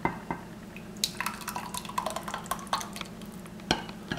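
Oil-and-lemon dressing being poured from a glass mixing bowl into a small glass pitcher: light glass-on-glass clinks and scattered small taps and drips. A sharper clink comes near the end.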